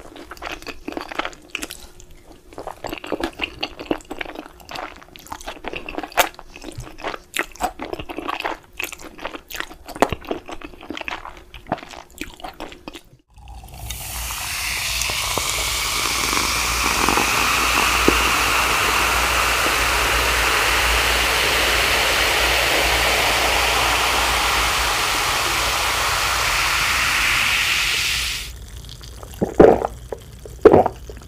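Close-miked eating of instant noodles in black bean sauce: chewing and slurping with many small wet clicks. About 14 seconds in, after a cut, a drink is poured from a can into a glass of ice, a steady pouring noise that lasts about fifteen seconds and is the loudest thing heard. Near the end come a few sharp, loud sounds.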